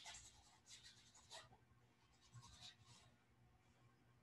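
Faint strokes of a wet paintbrush dragged across canvas: a few short, scratchy brushing passes.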